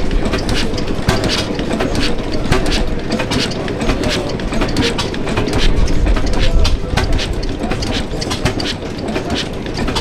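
Antique horizontal stationary engine with a large flywheel running, giving a continuous mechanical clatter of rapid sharp clicks over a low rumble.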